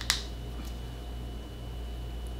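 Room tone: a steady low electrical hum with a thin, steady high-pitched whine, and one short sharp click just after the start.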